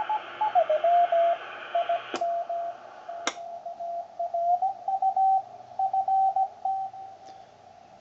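Ten-Tec Century 21 transceiver receiving a Morse code (CW) signal: one beat tone near 700 Hz keyed on and off, its pitch sliding as the main tuning knob is turned. Receiver hiss stops about two seconds in, and there are two sharp clicks about a second apart.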